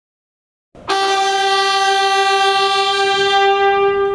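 Ceremonial brass horn call: a single long, steady, loud note that starts about a second in and is held for over three seconds.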